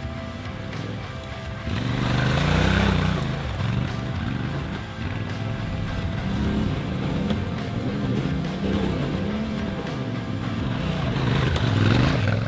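Yamaha Ténéré 700's parallel-twin engine revving up and down again and again under changing throttle as the bike climbs a dirt track, getting louder about two seconds in. Music runs underneath.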